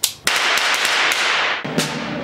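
A loud, sharp crack with a long hissing wash dying away over more than a second, then a few sharp snare drum strokes near the end.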